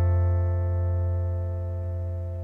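A strummed acoustic guitar chord ringing out and slowly fading.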